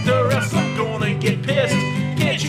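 Music: an acoustic guitar strummed in a steady rhythm, with a gliding, wavering melody line on top.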